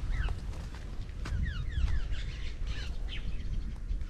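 Small birds chirping in a series of short, quick falling notes, over a low steady rumble.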